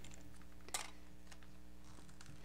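A few faint clicks from plastic binding clips being handled at the sewing machine's presser foot, the sharpest just under a second in, over a steady low hum.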